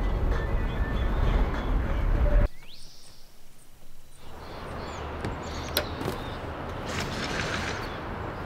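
VW Vanagon driving, with low road and engine noise that cuts off abruptly about two and a half seconds in. A short rising whoosh follows, then a quiet stretch, then fainter outdoor ambience with a few bird chirps.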